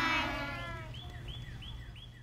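A child's voice holding a long, wavering note that fades away over about a second. It is followed by a run of short, high, falling chirps, about three a second.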